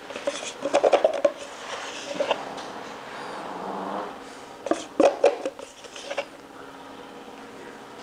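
A wooden paint stick scraping and knocking inside a plastic cup as epoxy resin is scooped out. It comes in several short spells with pauses between.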